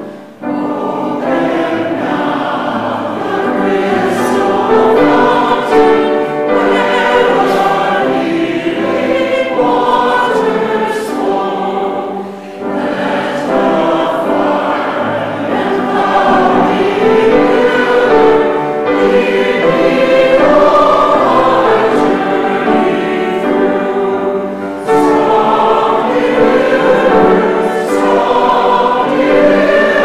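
A choir and congregation sing a hymn together, accompanied by piano. The singing pauses briefly between phrases, about twelve seconds in and again near twenty-five seconds.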